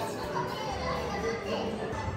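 Children's voices and chatter, with high-pitched speech over faint music.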